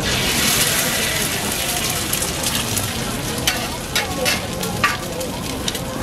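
A raw egg frying on a hot flat-top griddle. It sizzles loudest as it lands, about the start, then settles into a steadier fry with a few sharp crackles.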